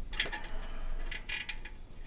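Ratchet wrench clicking in short, irregular runs as it tightens the nuts on an oxygen sensor's flange at the exhaust pipe.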